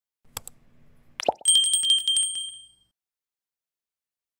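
Subscribe-button sound effect: a mouse click, then a second click with a quick drop in pitch, then a bright bell rung rapidly for about a second and a half, fading out.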